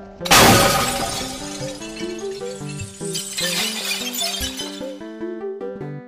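A glass-shattering sound effect crashes in about a third of a second in and rings off over a second or so, over a melodic background music track that carries on throughout; a second, softer crash of the same kind comes about three seconds in.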